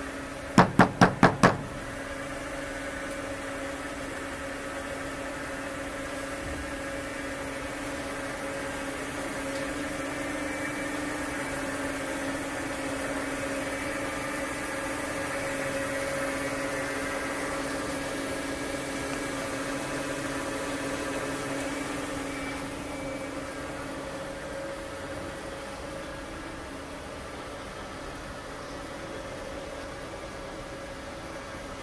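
Five quick, loud knocks on a steel dumpster about a second in, rapping meant to drive raccoons out. After them comes a steady mechanical hum with a low drone, a little louder in the middle of the stretch.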